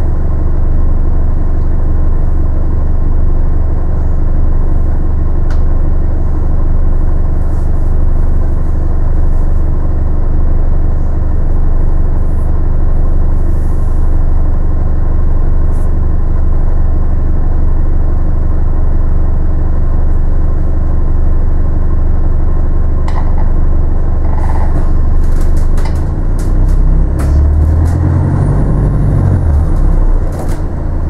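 Bus heard from inside the passenger saloon while driving: a steady low engine and road rumble, with scattered rattles and clicks in the last several seconds and a shift in the engine note near the end.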